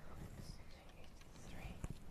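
Quiet room with faint whispered muttering under the breath and a single small click near the end.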